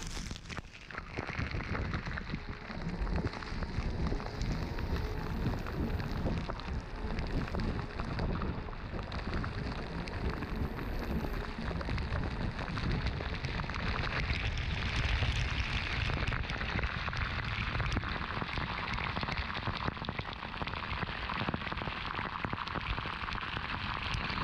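Steady spattering of water on the car's rear hatch. It gets brighter and hissier from about halfway through.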